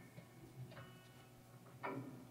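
A near-quiet pause from a live rock band's stage: a few faint ticks and a soft ringing note from the guitar amps, with a brief louder pluck near the end.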